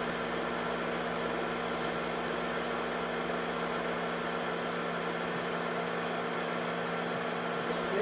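Slide projector's cooling fan running, a steady whir with a constant low electrical hum.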